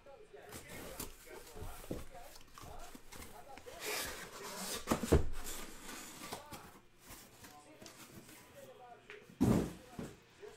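A sealed cardboard shipping case is opened: a blade slits the packing tape, then the case is handled. Scraping and a tape-and-cardboard tearing noise are punctuated by scattered knocks, a sharper knock about five seconds in and a heavier thump near the end.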